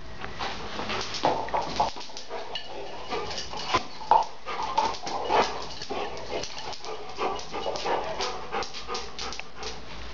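A dog making short vocal sounds while it plays with a red rubber Kong toy, among scattered clicks and knocks from the toy and the dog on a hard floor.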